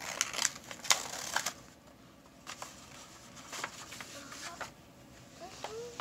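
A rolled sheet of stiff paper rustling and crackling as it is handled and unrolled. A dense patch of rustles comes in the first second and a half, then only scattered small clicks.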